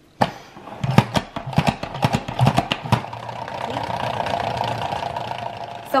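OXO pump-action salad spinner: the pump knob is pressed down repeatedly, each stroke clacking, then the basket spins on with a steady whir.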